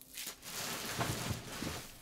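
Soft, steady rustling of packaging being handled.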